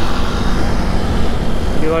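Motorcycle riding in city traffic: a steady low rumble of engine and wind on the microphone, with no distinct events.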